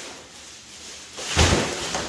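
Plastic wrap rustling around a large foam crash pad, then a single loud thump about one and a half seconds in as the heavy pad tips over onto its cardboard box.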